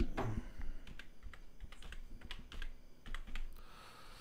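Typing on a computer keyboard: a run of quick, irregularly spaced keystrokes.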